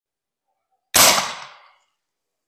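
A single shot from an ATX PCP air rifle built to fire fishing arrows: one sharp report about a second in, dying away over most of a second.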